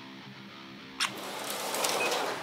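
Two Tyco HO-scale slot cars launching down a drag strip: a click about a second in, then a rising whir of their motors and wheels on the track. Background music plays throughout.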